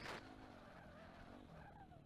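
Yamaha YZ250F single-cylinder four-stroke dirt bike engine heard faintly while riding, its pitch wavering with the throttle and falling near the end. A short rush of noise comes right at the start.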